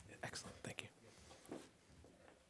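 Faint hushed voices with a few soft knocks and rustles as chairs are handled and people sit down.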